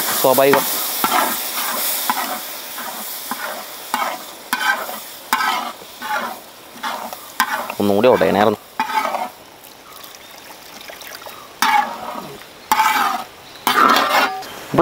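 A metal spoon stirs and scrapes a masala of onions and peas in a large metal pot. The frying sizzle is loud at first and fades, under repeated scraping strokes about one to two a second, with a quieter spell past the middle.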